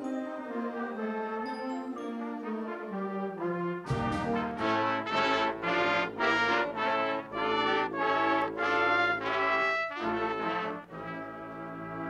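Concert band playing, led by brass: soft held chords at first, then about four seconds in the full band enters loudly with a sharp hit and heavy low brass, playing pulsing chords, and it eases off to a quieter passage near the end.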